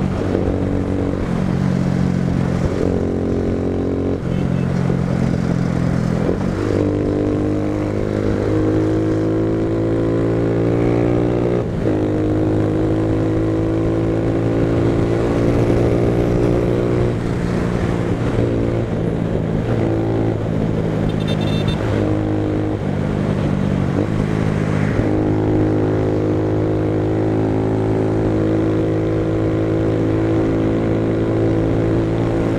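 A motorcycle engine heard from the rider's seat while riding in traffic. Its pitch climbs as it pulls, then drops back in steps several times as the gears change or the throttle eases.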